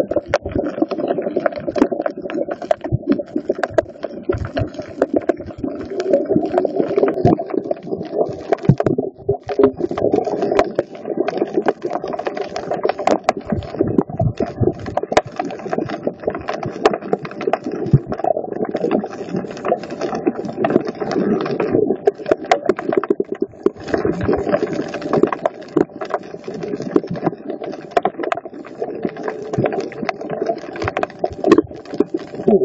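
Underwater sound over a coral reef picked up by a phone's microphone: a constant dense crackle of sharp clicks over a muffled low rumble, with a short lull in the clicking about nine seconds in.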